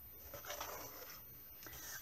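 Faint rustling and scraping as a plastic ruler is lifted and slid off a sheet of paper on a wooden desk, over quiet room tone.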